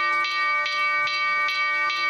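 An electronic signal bell rings steadily, pulsing about four times a second: the cue that a message has arrived in the house's mailbox.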